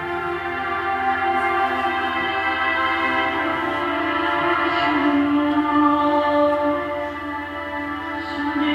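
Slow ambient background music of held, sustained chords from a TV report's soundtrack, played back in a hall; it swells gradually and eases off near the end.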